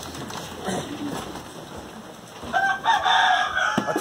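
A rooster crowing once, one long call starting about two and a half seconds in.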